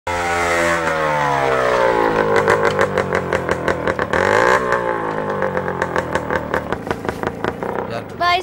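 Motorcycle engine running, its pitch falling as the bike slows, then settling into a fast, even putter with a brief dip and rise in pitch about halfway through.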